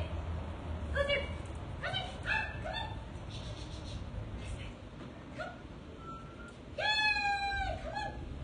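A dog whimpering: a few short rising yips in the first three seconds, then one longer whine about seven seconds in.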